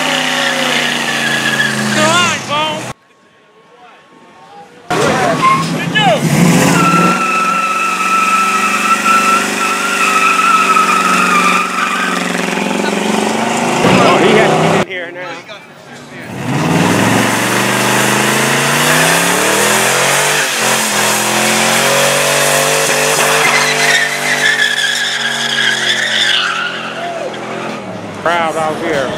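A car doing a burnout: the engine revs hard, rising and falling, while the spinning rear tyres squeal against the pavement in a long steady screech. The sound comes in three takes, broken by two short gaps.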